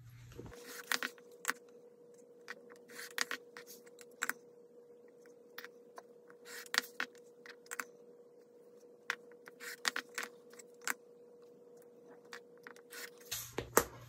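Rotary cutter slicing through a doubled strip of cotton fabric along a clear acrylic ruler on a cutting mat. The plastic ruler clicks and scrapes as it is flipped and set down again, giving scattered short clicks and scrapes.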